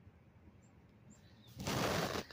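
A brief loud rustle about a second and a half in, from someone moving inside a nylon tent. Faint high chirps sound before it.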